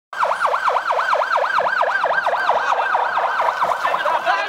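Emergency vehicle siren in a fast yelp, its pitch sweeping up and down about four times a second.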